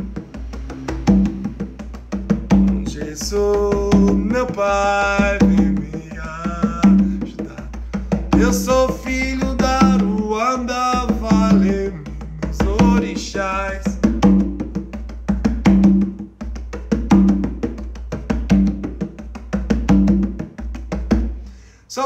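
Conga played by hand in a steady, easy samba-like groove. Ringing open tones fall about every three-quarters of a second, with quick, lighter finger and palm taps between them.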